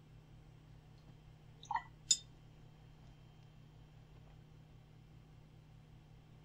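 Two light clinks about half a second apart, a couple of seconds in, the second sharper: a watercolor brush knocked against hard painting gear.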